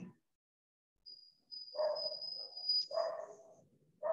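A faint high-pitched whine lasting about two and a half seconds, with two short lower cries under it: a dog whimpering.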